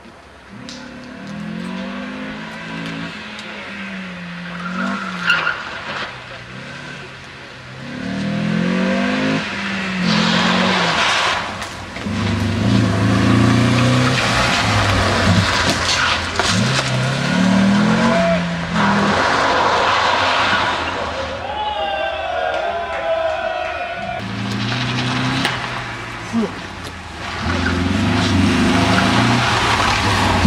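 A rally car's engine revving hard and dropping back between gear changes as it drives a slalom course, getting louder as it comes closer. Tyres skid and scrabble on loose gravel through the turns.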